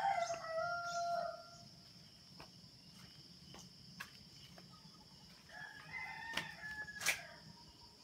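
A rooster crowing twice: one crow at the start, lasting about a second and a half, and another about six seconds in. A steady high-pitched insect drone runs underneath.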